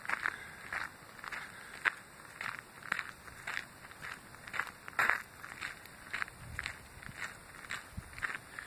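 Footsteps of a person walking on a sandy gravel path, about two steps a second, each a short gritty crunch.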